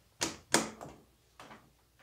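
A few short knocks: two louder ones close together early in the first second, then fainter ones after.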